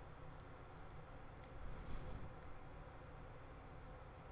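Quiet room tone with low hum, broken by three faint computer mouse clicks about a second apart.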